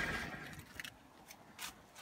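A short scuffing noise at the start, then a few faint clicks and crackles of dry corn husk being handled.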